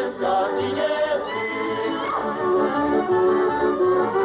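Slovak folk dance song sung by a group of voices over an instrumental band, with held melody notes over a steady beat.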